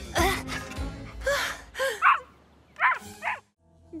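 Cartoon soundtrack: background music under several short wordless vocal sounds, like gasps or exclamations.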